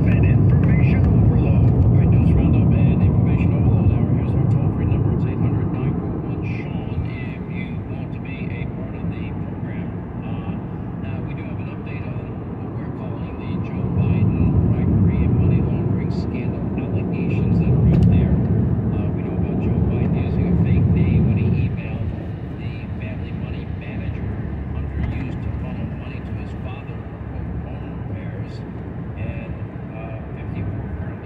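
Tyre and road noise inside a car's cabin at highway speed, a steady low rumble that grows louder for several seconds in the middle and then eases back.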